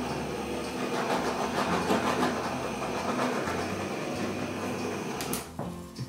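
Hand-held heat gun running steadily, its fan blowing hot air over the wet acrylic paint to bring up cells, then switched off suddenly about five and a half seconds in.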